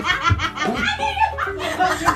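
Several women laughing hard together in fits of giggles and snickers.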